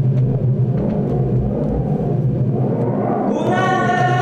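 A low, steady rumbling drone; about three seconds in, a long Andean horn (bocina) starts a long held note that carries on past the end.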